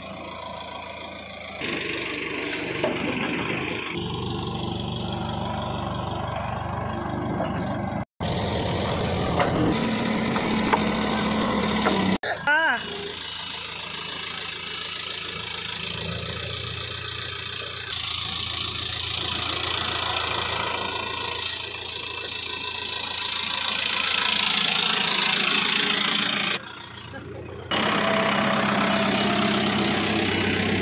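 Case 851EX backhoe loader's diesel engine running and working its loader, a steady low drone with shifting mechanical noise over it. The sound breaks off and changes abruptly a few times, near 8, 12 and 27 seconds.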